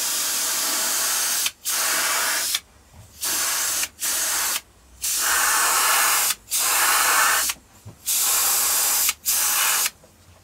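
Spray paint hissing in about eight bursts of half a second to two seconds each, every burst starting and stopping sharply as the spray is triggered on and off.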